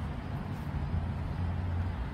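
Steady low rumble of urban outdoor background noise, with a faint hum underneath.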